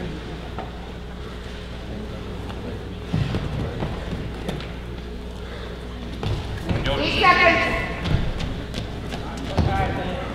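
Wrestling bout on a gym mat: scattered thuds of bodies on the mat over a steady low hum, with a voice shouting loudly about seven seconds in and again briefly near the end.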